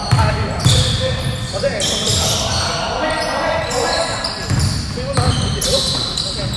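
A basketball bouncing on a wooden hall floor, a run of short low thumps as it is dribbled up the court, with voices in the background. The sound rings in the large sports hall.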